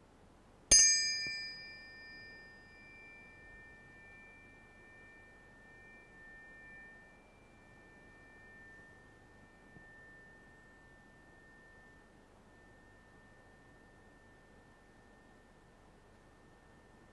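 A pair of tuning forks struck together once, under a second in: a sharp metallic clink, then two steady high tones ringing together. The higher tone fades out about nine seconds later; the lower one keeps ringing.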